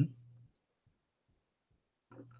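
A short "mm-hmm" of agreement at the start, then near silence with a few faint clicks.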